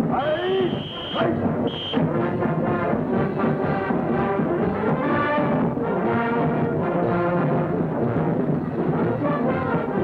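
Brass band playing a march, with a drill command called out at the start.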